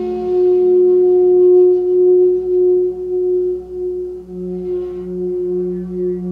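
A bamboo four-hole Mohave-tuned flute in low F# minor, hand-made by Bryan Gall, playing one long held note. The note starts breathy, and a lower tone joins it about four seconds in.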